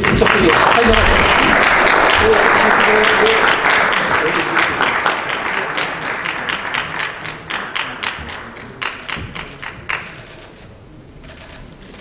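Audience applauding, a dense burst at first that thins out into scattered separate claps and stops about ten seconds in.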